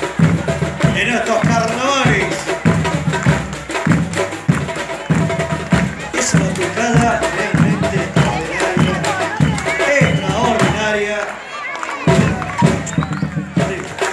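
Carnival comparsa music with a steady low drum beat, in the style of a batucada percussion group, with voices over it.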